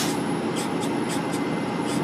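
Semi-truck diesel engine and road noise heard inside the cab, running steadily in ninth gear at about 40 mph, with one sharp click right at the start.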